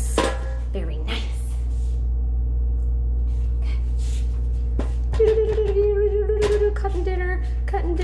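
A woman humming a short held tune from about five seconds in, over a steady low electrical hum. A few short knocks, such as things handled on a kitchen counter, come between.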